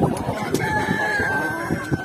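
A rooster crowing. The crow ends in one long held note from about half a second in, falling slightly in pitch.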